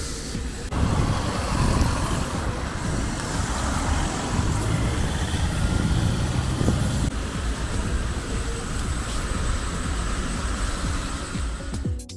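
City road traffic: cars driving through an intersection, a steady rumble of engines and tyres.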